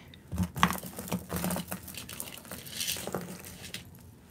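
Costume jewelry being handled on a table: small metal and bead pieces clinking and rattling against each other in a run of light, irregular clicks.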